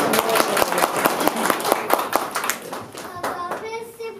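A group of people clapping, dense at first and thinning out about three seconds in, with voices starting near the end.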